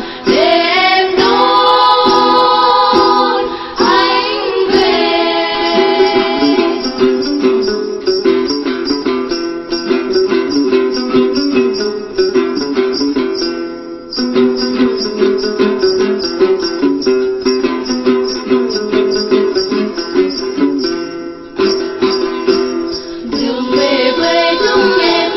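Tày then folk music: female voices singing over a group of đàn tính long-necked lutes plucking a steady, quick accompaniment. From about seven seconds in the voices mostly drop out and the lutes carry a fast plucked interlude, and the singing comes back near the end.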